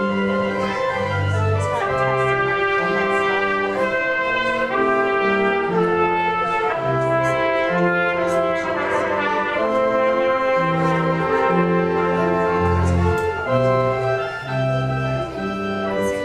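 Church organ playing a postlude: sustained full chords over a moving bass line, the bass note changing about once a second.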